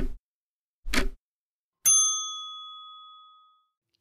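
Ticking countdown-clock sound effect, two ticks a second apart. Then, just before two seconds in, a single bright bell ding rings and fades over nearly two seconds: the signal that time is up for the trivia question.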